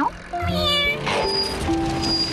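A cartoon cat meowing over light background music: a short call right at the start and a fuller meow about half a second in.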